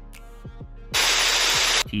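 Background music with a steady drum beat. About a second in, a loud burst of white-noise static cuts in, lasts just under a second and stops abruptly.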